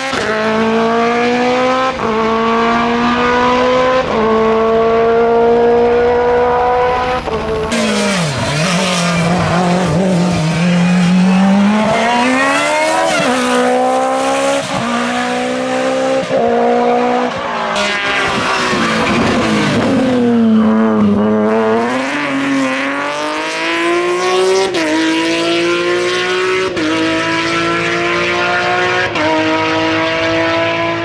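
Hillclimb race car engines at full throttle, rising in pitch through the gears with quick upshifts about every two seconds. Twice the revs fall away and then build back up as the car slows for a bend and accelerates out again.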